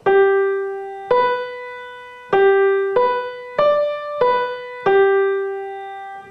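Young Chang grand piano played with the right hand: a slow improvised melody of seven single notes on the G scale, moving among G, B and D, each note struck and left to ring and fade.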